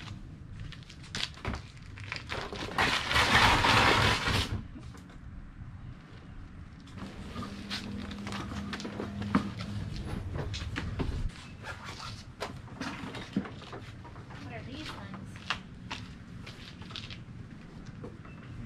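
Objects being rummaged through and set down: scattered knocks, clicks and clatters, with a loud rush of noise lasting about two seconds, about three seconds in.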